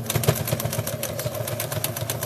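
Electric sewing machine running steadily, its needle stitching with a rapid, even clatter over a low motor hum.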